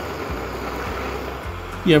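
Small jeweller's soldering torch hissing steadily, its flame held on silver filigree pieces to heat them until the powdered solder flows.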